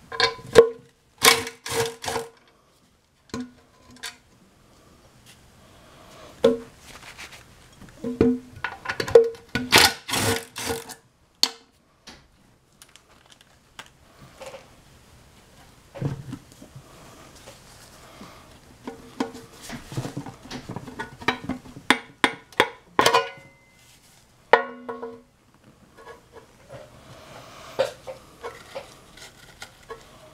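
Cordless power screwdriver whirring in short bursts as it backs out the screws holding the oil pickup in an engine oil pan, with sharp metallic clinks of screws and parts against the pan in between.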